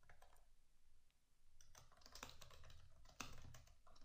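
Faint computer keyboard typing: a few keystrokes near the start, then quick runs of key clicks through the second half.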